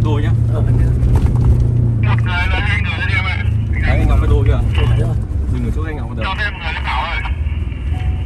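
Low, steady drone of a Ford pickup's engine and tyres heard from inside the cabin while it drives on a sand track, with men talking over it.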